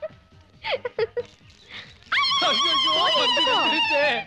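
A loud, high, wavering whine like a dog's, starting about halfway in and lasting about two seconds, its pitch sinking slightly; a few short faint sounds come before it.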